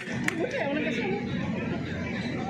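Several people talking over one another, with one sharp clap shortly after the start, ending a run of rhythmic clapping.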